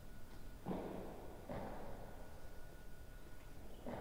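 Three thuds of a real tennis ball between points: a strong one about a second in, a second shortly after, and a third near the end. Each rings on in the echoing enclosed court.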